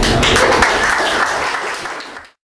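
Audience applauding after the last notes of a live acoustic song, fading near the end.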